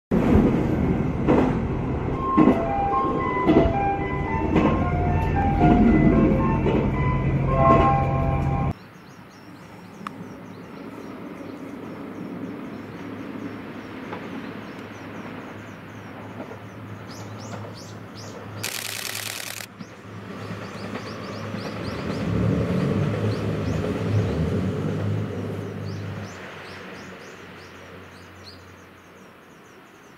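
For about nine seconds a JR Shikoku onboard chime plays its short melody over the loud running rumble of a train. It cuts off suddenly, and a distant diesel railcar runs along the coastal line with birds chirping. A brief hiss comes about 19 s in, and the engine and wheel noise grow louder from about 22 to 26 s as the train passes, then fade.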